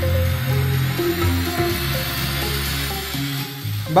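Music playing through a Gradiente Vibrance GST-107 tower soundbar, heavy in the bass, with bass turned up to maximum. The music drops off near the end.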